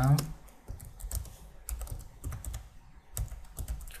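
Computer keyboard being typed on: a run of irregular key clicks as a command line is entered.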